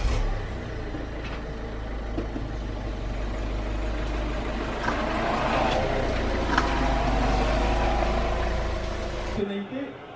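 A car engine running as the car manoeuvres out of a carport: a steady low rumble that swells a little as it moves and stops abruptly near the end.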